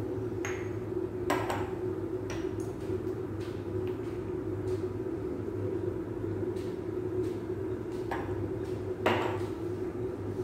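A few light metal clinks of a spoon against a stainless-steel pressure cooker, over a steady kitchen hum.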